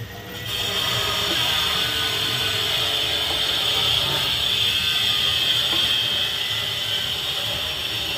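A metal nut being turned by hand up the threaded shank of a basin fitting against the underside of the countertop, a continuous metallic rasp of nut on thread that starts about half a second in.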